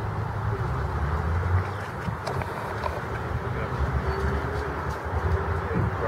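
Steady low outdoor rumble with one brief, faint high chirp from a small bird about four seconds in.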